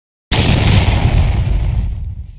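Logo-intro sound effect: a sudden loud burst of noise about a third of a second in, deep with a hiss on top, slowly fading away.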